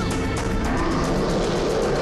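Tense action background music with a fast, driving rhythm over a low rumble.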